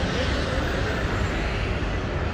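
Steady low rumble of outdoor urban background noise, with no distinct events.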